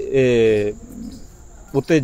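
A man's voice holding one long falling syllable, then a faint low bird call about a second in, before speech resumes near the end.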